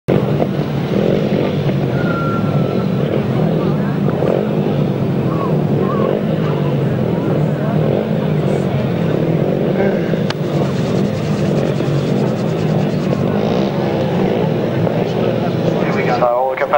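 Several grasstrack solo motorcycles' single-cylinder engines running together at the start line, a steady mass of engine noise with some wavering in pitch.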